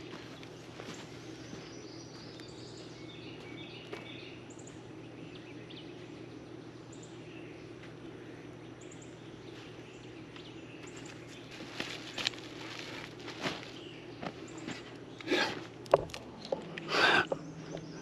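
A large fabric shade cover with straps is rolled up by hand on a dirt drive, giving several short bursts of rustling and scraping in the second half. Under it runs a steady low hum, with faint bird chirps early on.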